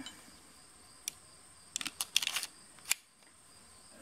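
Small metal clicks and taps of a Zastava M57 pistol's slide, barrel and a cartridge being handled: a single click about a second in, a quick run of clicks around two seconds, and one more shortly after. Insects trill steadily in the background.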